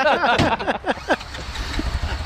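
Men laughing, fading out after about a second, over a low steady rumble.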